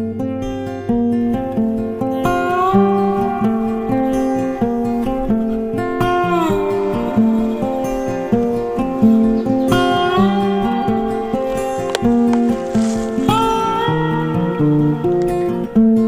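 Background music: an acoustic guitar picks a steady melody, with a few notes that slide in pitch.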